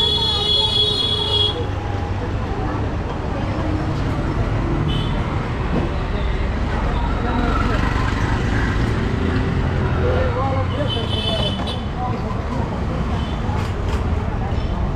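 Busy street traffic with vehicle horns sounding three times: a honk of about a second and a half at the start, a short toot about five seconds in and another honk of about a second near eleven seconds, over steady motor and traffic noise and passers-by talking.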